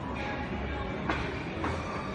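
Steady low rumble and background hum of a busy indoor public space, with a few soft knocks.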